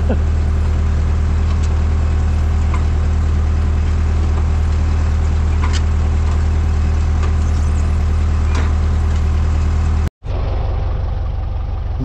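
Tractor engine running steadily inside the cab as it pulls a four-row potato planter, a loud even drone. About ten seconds in the sound cuts off sharply and comes back quieter, the tractor and planter now heard from outside.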